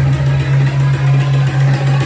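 Loud electronic dance music played by a DJ over a club sound system, dominated by a deep, held bass note with a steady beat on top.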